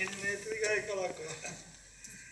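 A man speaking from the stage, his words trailing off about a second in and followed by a quieter stretch.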